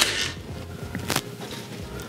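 A single sharp click about halfway through from a Ryobi AirStrike cordless brad nailer, used to drive brads into thin wood planks.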